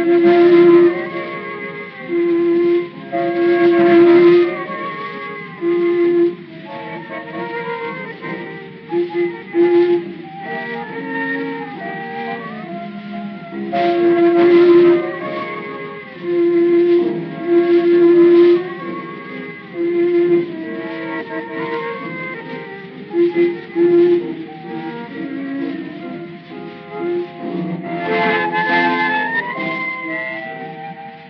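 Instrumental tango from a 1920 acoustic-era recording by a small orquesta típica of bandoneon, violin and piano. The sound is narrow and boxy, with no deep bass and no high treble, typical of acoustic horn recording.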